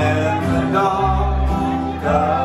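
Live acoustic band music: two acoustic guitars playing with an electric bass underneath, a low bass note held for about half a second partway through.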